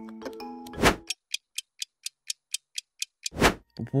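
Background music ending in a whoosh about a second in, then an edited clock-ticking sound effect, about four ticks a second over silence, marking the wait for the yeast to activate; another whoosh comes near the end.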